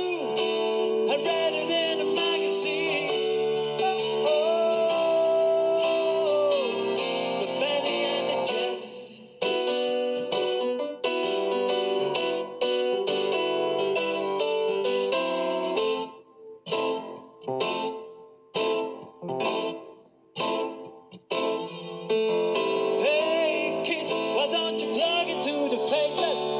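Live band playing an instrumental passage with guitar: chords held over a steady groove, breaking about sixteen seconds in into short, stabbed chords with brief silences between them, then the full band coming back in about five seconds later.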